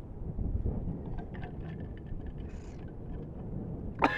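Wind buffeting the microphone, a steady low rumble with a few faint small ticks.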